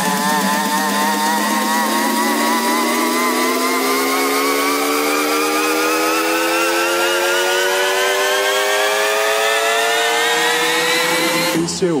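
Buzzy electronic synth tone rising steadily in pitch for about eleven seconds, a build-up riser in a car-audio electro track, cutting off suddenly near the end.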